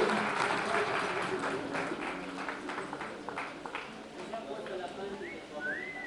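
Audience applause dying away to scattered individual claps, with voices murmuring underneath. Near the end comes one short whistle that rises and then falls.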